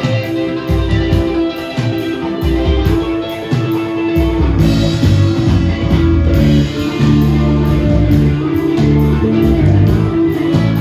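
Live glam rock band playing: electric guitar over bass and drums, with a regular high tick about three times a second. The low end fills out about four seconds in.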